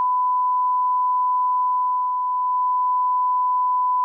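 A censor bleep: one steady, pure beep tone edited in over speech, with all other sound muted beneath it.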